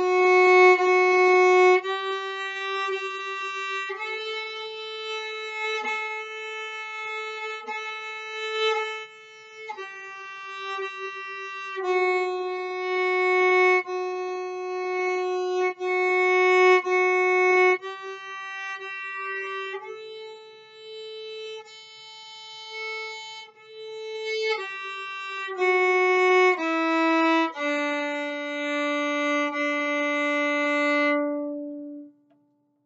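Viola played with the bow: a slow beginner melody of long held notes, mostly about two seconds each, moving among F sharp, G and A on the D and A strings, including a fourth-finger A checked against the open A. A few shorter notes come near the end before it settles on a lower held note.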